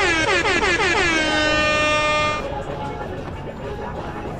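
A horn blast: a loud pitched tone that opens with a rapid flutter of short falling swoops, then settles into a steady note for about a second before cutting off about two and a half seconds in.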